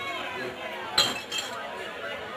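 Crowd chatter with a sharp glass clink about a second in and a fainter one just after it.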